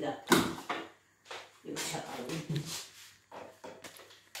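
A sharp knock shortly after the start, then low, indistinct talk through the middle.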